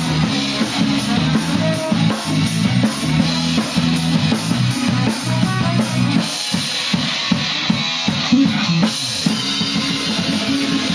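A live band playing, with the drum kit prominent over a moving bass line. A little past the middle the bass drops back for a few seconds, leaving sharp drum hits, before the full band returns.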